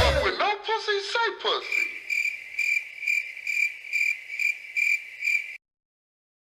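The tail end of a hip-hop track, then a cricket chirping in a steady rhythm, a little under three chirps a second, which cuts off suddenly near the end.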